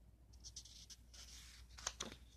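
Faint rustling of a book's paper pages being handled and turned, with one short sharp click near the end.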